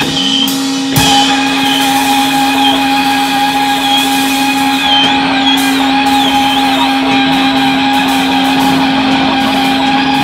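Live free-noise improvisation on electric guitar and other instruments: a loud, dense din over a low note held steady throughout, with wavering, looping high squeals. It dips briefly just after the start, then a sharp crack comes about a second in.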